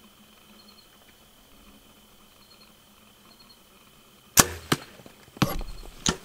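Compound bow shot: a sharp crack of the string's release about four seconds in, a fainter crack just after, then another loud knock about a second later. Before the shot, faint high insect-like chirping.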